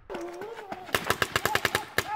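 Planet Eclipse Etek 4 electronic paintball marker firing rapidly, about ten shots a second, from about a second in. A wavering pitched sound rises and falls at the start and between the shots.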